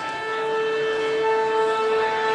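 Live opera music, sustained held notes: a single note enters just after the start, and higher notes join over the next second or so to build a steady chord.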